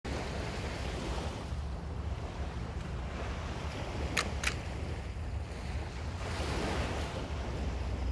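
Ocean surf washing onto a beach: a steady rush of waves that swells a little near the end. Two short, sharp high ticks come in quick succession about four seconds in.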